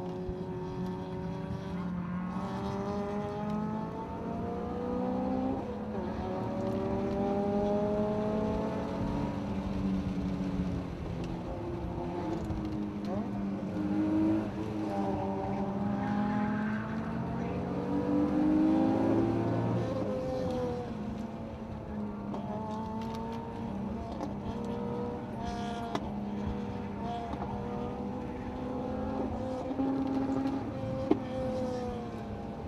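BMW E36 M3's straight-six engine heard from inside the cabin, its revs climbing and falling again and again.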